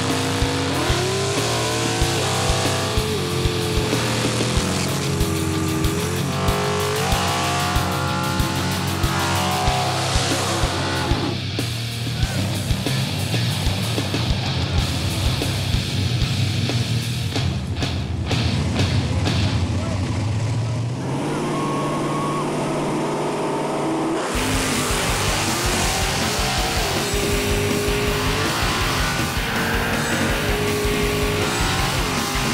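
Nitrous-fed small-block V8 drag cars, a Chevy Vega and a Mercury Capri, revving hard, pitch climbing in surges, as rear slicks spin and squeal in burnouts; the sound changes abruptly a few times, with music underneath.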